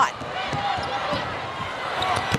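Basketball being dribbled on a hardwood court: a series of short thuds.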